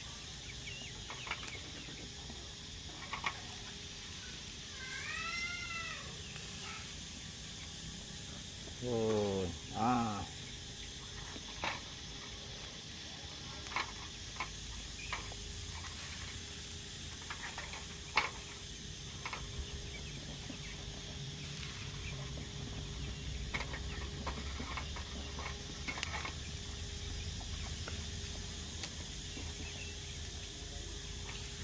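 Chickens calling in the background: an arching call about five seconds in and two louder rising calls around nine to ten seconds. Light scattered clicks of metal tongs on a wire grill rack run beneath.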